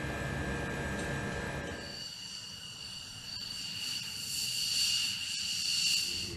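A steady low mechanical hum for about two seconds. It then gives way to a high-pitched two-tone jet turbine whine that grows louder toward the end, as an aircraft approaches on the runway.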